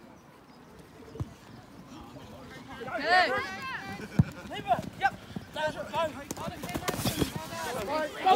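Young players shouting and calling out across a rugby field as play restarts, starting about three seconds in. There is a single thud about a second in, and sharp thumps of running and tackling near the end.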